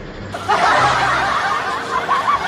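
Several people laughing and snickering together, starting about a third of a second in.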